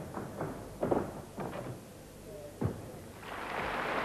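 A gymnast's vault: a few thuds as she hits the springboard and the vaulting horse, then a single heavier thud as she lands on the mat about two-thirds of the way through. Crowd applause swells up right after the landing.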